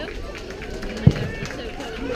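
A baseball popping once into a catcher's mitt about a second in, a single sharp low thump, over spectators chatting.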